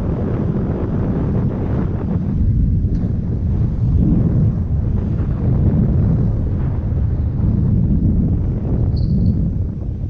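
Wind buffeting the camera microphone as a bicycle speeds downhill, a loud, unsteady low rumble mixed with tyre noise on the asphalt. A brief high squeak about nine seconds in.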